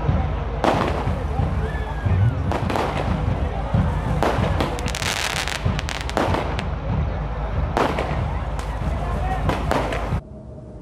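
Aerial fireworks going off overhead: a series of sharp bangs every second or two, with a stretch of crackling about halfway through.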